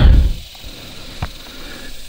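A person's footsteps and rustling through dry grass and brush, with a low thump at the start and a single sharp click a little over a second in.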